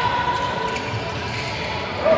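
A handball bouncing on the sports-hall court floor during play, with players' voices around it.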